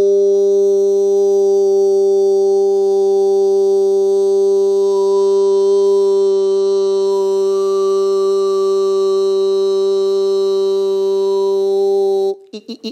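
A man's voice holding one long sung "oh" tone at a steady low pitch, with only slight changes in the vowel colour.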